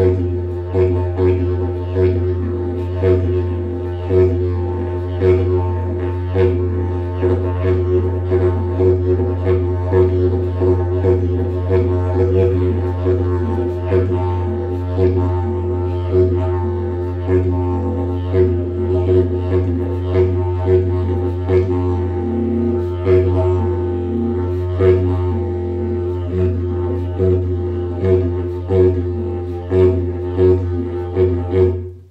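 A mago, a short high-pitched didgeridoo in F, played in traditional Yolngu style: one unbroken drone with a bright overtone ringing above it, driven by rhythmic accents a few times a second. It plays easily, with runs, and sounds lively.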